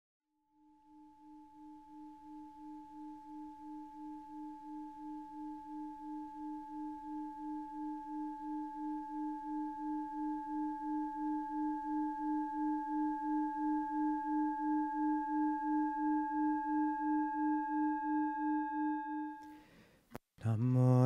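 Singing bowl sung by rubbing its rim: one sustained low ringing tone with fainter higher overtones and a steady wobble of about two pulses a second. It swells slowly louder and stops shortly before the end.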